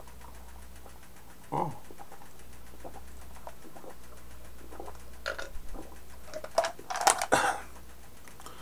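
A man drinking carbonated soda from a mug: a short gulp with a falling pitch about a second and a half in, then a run of swallows and wet mouth clicks that grows louder near the end.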